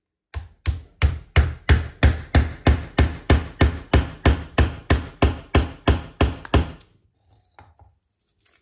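A mallet tapping a thin wooden stick down into a hole drilled in a slab of log, with about twenty even blows at roughly three a second. The blows stop about seven seconds in, leaving only faint handling.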